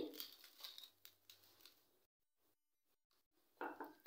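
Near silence, with a few faint soft taps and patters in the first second and a half as a spoonful of coarsely ground garam masala is tipped onto raw chicken pieces in a plastic tub.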